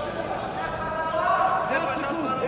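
Several voices shouting over one another in a sports hall while two wrestlers grapple, with a couple of brief squeaks from wrestling shoes on the mat.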